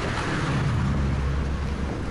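Wind rumbling on the Sony FDR-X3000 action cam's built-in microphone, with the camera's wind noise reduction switched off, mixed with the noise of road traffic passing alongside. It is a steady low rumble, heaviest through the middle.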